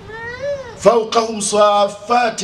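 A man's voice chanting Quranic Arabic in a melodic recitation style. It opens on one drawn-out note that rises and falls, then moves into quicker sung syllables.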